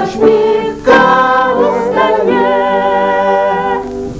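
Three women singing a folk-style song in harmony to upright piano accompaniment, ending on a long held chord just before the end.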